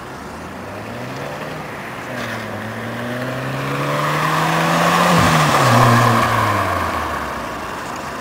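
Ford Fiesta Mk6 Zetec S with a Cobra Sport stainless steel cat-back exhaust accelerating toward and past. The exhaust note rises in pitch as the car nears, drops as it passes about five seconds in, then fades as it drives away.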